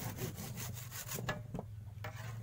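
Hand saw cutting through a cassava stem in quick back-and-forth strokes, the sawing stopping about a second and a half in as the piece comes free.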